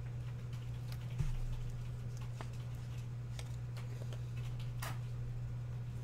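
Faint light clicks and rustles of a trading card and thin plastic sleeves being handled as the card is slipped into a clear holder, with one firmer knock about a second in, over a steady low hum.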